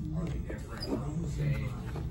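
Indistinct talking, too unclear to make out words, over a steady low hum.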